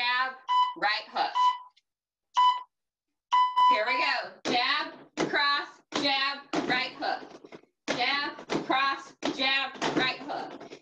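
A person's voice talking, in short phrases broken by abrupt silences. In the first four seconds a steady electronic beep sounds about four times.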